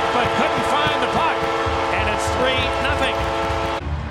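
Arena crowd cheering over a goal horn's sustained, steady chord after a home goal. Both cut off suddenly near the end.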